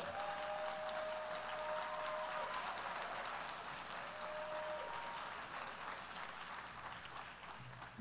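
Applause from an audience in a large assembly hall, an even clapping that fades slowly, with a couple of faint held tones over it in the first half.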